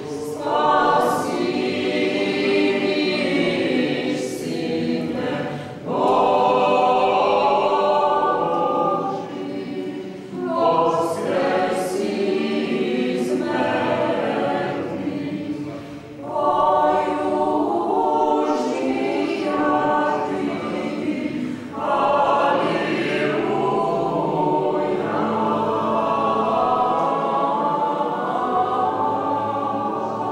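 Small church choir, mostly women's voices, singing unaccompanied under a conductor, in sustained phrases with short breaks between them.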